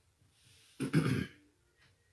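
A man clearing his throat once, briefly, about a second in.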